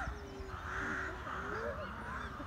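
Gibbons calling: several overlapping calls that slide up and down in pitch.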